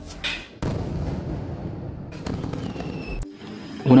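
Channel intro sting: a sudden burst of noise a little under a second in that fades away, a second burst about two seconds in with faint high tones, and a short low thump just after three seconds.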